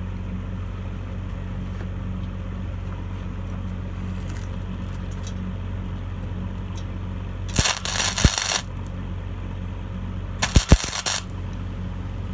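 Gasless flux-core wire welder (Sealey MightyMig 100) at its minimum power and wire-speed settings, striking two short spot welds on thin sheet steel. The arc crackles for about a second a little past halfway, then again for about half a second roughly two seconds later, over a steady low hum.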